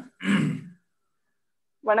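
Speech over a video call: a man's short final phrase, about a second of dead silence, then a woman begins to speak near the end.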